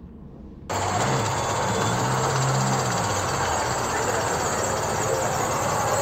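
Town street noise with a vehicle engine running steadily underneath, cutting in suddenly just under a second in.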